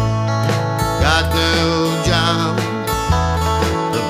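Country song: strummed acoustic guitar over a bass line that changes note about every second, with a wavering lead melody on top from about a second in.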